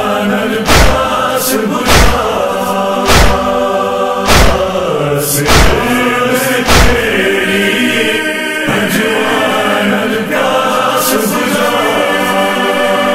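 A noha chorus holding a slow, wordless lament melody, with a heavy thump about every second and a quarter. The thumps stop about seven seconds in and the chorus carries on alone.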